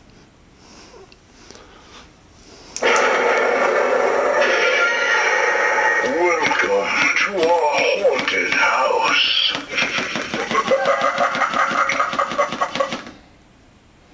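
Animatronic evil-butler Halloween prop playing its recorded voice track through its built-in speaker: a loud, wordless vocal effect that starts suddenly about three seconds in, swoops up and down in pitch in the middle, pulses rapidly toward the end, and cuts off sharply about a second before the close.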